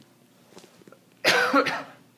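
A man coughing, two quick coughs close together a little over a second in.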